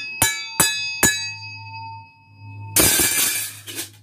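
A hand-held steel circular cutting disc is struck several times in quick succession and rings out with a long, clear metallic tone. This is the ring test for judging a scrap disc as knife steel: a sustained ring means a good disc. Near the end a loud clatter cuts the ringing off, followed by a few light clicks.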